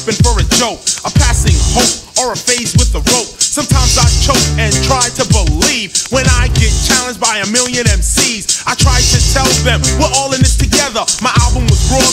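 1980s old-school hip-hop track playing loud, a heavy bass beat pulsing regularly under a rapped vocal.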